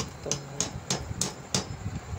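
A metal spoon tapped against the rim of an aluminium cooking pot, six sharp metallic clicks at about three a second.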